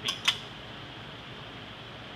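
Steady hiss of compressed air blowing through the weld-nut electrode of a resistance spot welder, the blow-through that keeps slag from binding the lower spring-loaded guide pin. A single sharp click comes just after the start.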